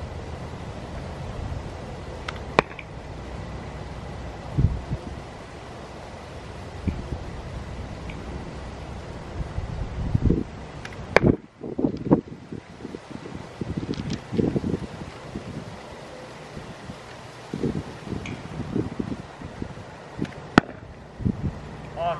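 A slingshot bow shooting arrows: three sharp cracks about nine seconds apart over steady wind noise. A run of footsteps crunches on gravel in the middle.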